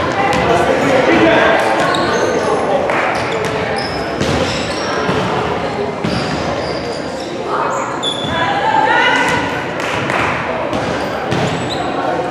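A basketball bouncing repeatedly on a hardwood gym floor, with short high squeaks of shoes on the court and the voices of players and spectators calling out, all echoing in a large gym.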